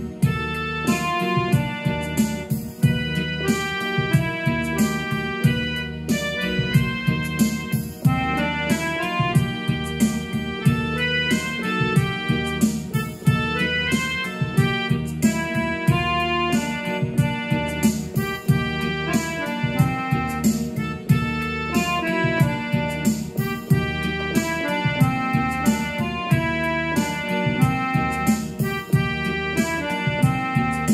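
Yamaha portable keyboard playing a single-note melody, with sustained chords and a regular beat beneath it.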